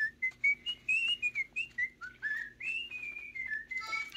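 A person whistling a wandering tune: one line of short notes that slide up and down in pitch, with a few faint clicks.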